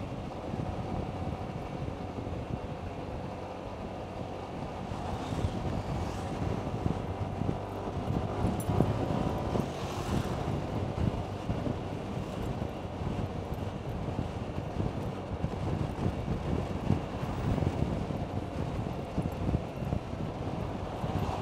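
Maxi-scooter riding at about 46 km/h in town: a steady engine drone under wind rushing across the microphone, with road noise.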